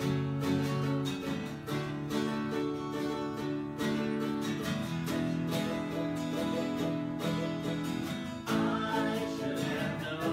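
Acoustic guitar strummed in a steady rhythm, chords ringing, in the wordless opening of a song.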